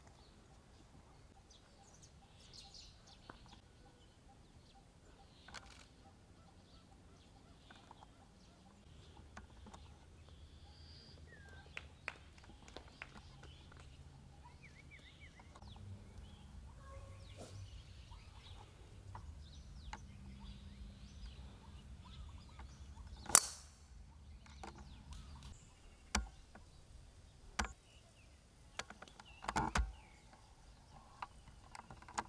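Quiet golf-course ambience with faint scattered bird chirps. About two-thirds of the way through comes a single sharp crack of a golf club striking a ball, the loudest sound, followed by a few smaller clicks near the end.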